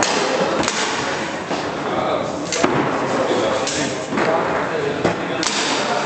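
Foosball table in play: a few sharp clacks of the ball and rods, over steady chatter from onlookers.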